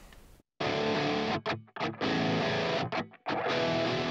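Distorted electric guitar playing a heavy riff, broken by a few brief stops about a second and a half in and again near three seconds.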